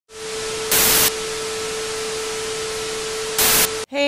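Steady static hiss with a constant mid-pitched hum under it. The hiss swells into two louder bursts, one about a second in and one near the end, then cuts off suddenly.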